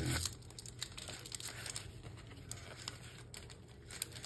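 Faint rustling and light ticks of 1989 Topps cardboard baseball cards being slid apart and flicked through by hand.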